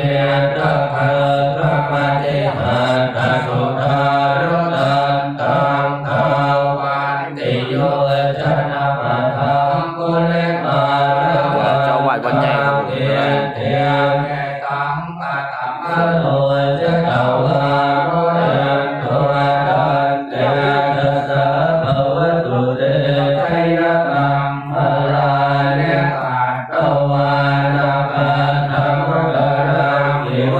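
Buddhist monks chanting a recitation in unison on a steady, low chanting tone. There is a brief pause for breath about halfway through.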